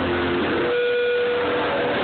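Loud live band music in a packed crowd, picked up close on a phone microphone that muddies and distorts it. One held note sounds for about a second near the middle.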